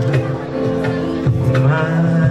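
A man singing into a microphone over instrumental accompaniment with steady held notes, amplified through the hall's sound system.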